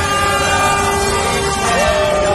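Truck air horns honking in long, overlapping held notes from a passing convoy, over the rumble of highway traffic.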